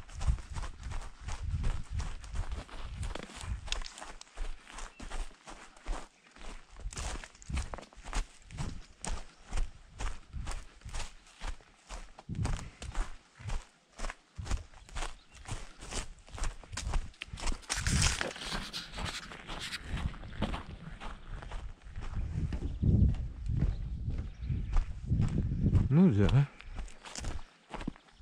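Footsteps of a walker crunching on a dry dirt and gravel trail at a steady pace, with a brief rustling hiss about two-thirds of the way through.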